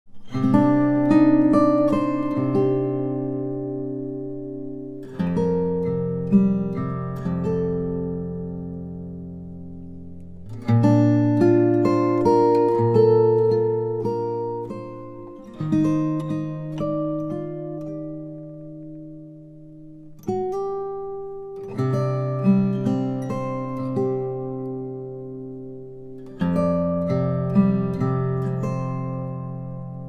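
Solo steel-string acoustic guitar played fingerstyle with a thumb pick: a slow melody over ringing chords. Each phrase opens with a firm chord, about every five seconds, and the notes are left to ring and fade.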